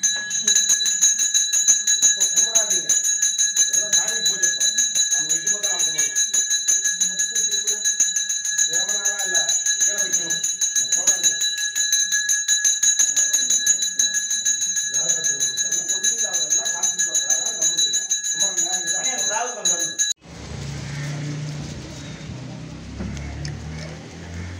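A puja hand bell rung rapidly and without pause during the aarti, its bright ring steady, with a voice chanting or speaking underneath. It cuts off suddenly near the end, giving way to low rumbling outdoor noise.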